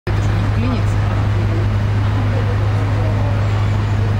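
Steady low hum of a boat's engine running at idle, with faint voices chattering in the background.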